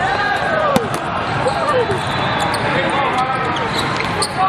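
Volleyball hall sounds: sneakers squeaking on the sport court and a sharp ball strike about three-quarters of a second in, with a few lighter ball contacts later, over steady background voices in a large hall.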